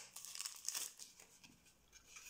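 Packaging crinkling faintly in the hands as packs of lace trim are opened, the crackles thinning out and dying away near the end.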